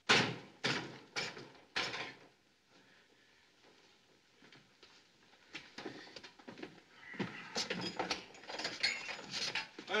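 Five sharp knocks with a short echo in the first two seconds, then a quiet stretch, then lighter knocks and faint voices from about halfway.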